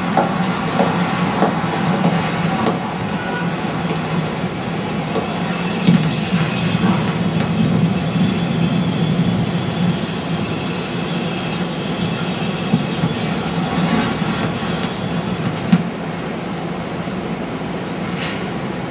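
Loud, continuous rumbling mechanical noise with occasional faint clicks and knocks. It is the soundtrack of a projected video work, heard through the room's speakers.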